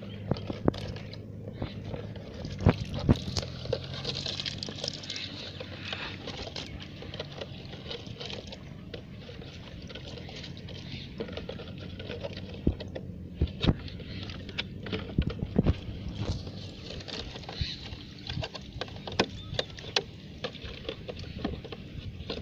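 Small fish flapping and splashing in shallow water as they are tipped from a cut plastic bottle into a plastic bucket, with irregular sharp taps and patters throughout.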